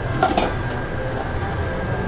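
A couple of light clinks from metal prep containers about a quarter second in, over a steady background hum.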